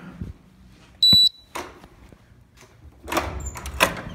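A short, loud, high electronic beep about a second in, from a keycard reader at an access-controlled door, then a click. Near the end come rustling and a sharp clunk from the door's metal push-bar latch as the door is opened.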